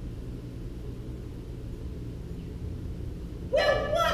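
A pause in the dialogue filled by a steady low hum of room noise. About three and a half seconds in, a voice starts speaking.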